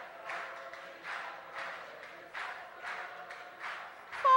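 A congregation clapping hands in a slow, even rhythm, about two claps a second, faint and echoing in the hall, with a faint held note underneath.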